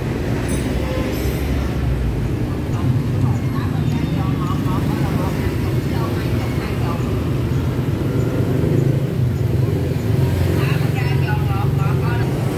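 Street traffic of motorbikes, scooters and cars: engines running at low speed with a steady low hum as vehicles pass close by. Voices can be heard faintly in the background.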